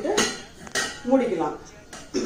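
Stainless steel containers clinking against the rim and inside of a steel pressure cooker as they are set into it: one sharp clink just after the start and another a little before the middle.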